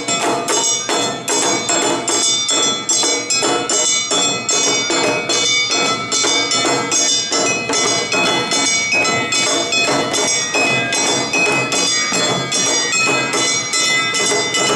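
Awa odori festival drum-and-gong band playing live: shime-daiko drums and a large drum beaten in a steady, even rhythm, with the bright ringing of a hand-held kane gong over the drums.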